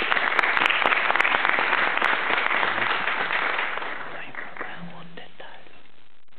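Audience applauding, the clapping dying away about four seconds in.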